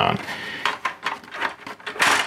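Irregular light plastic clicks and ticks from a Canon Pixma MG2520 inkjet printer's paper-feed gear train as it is worked by hand.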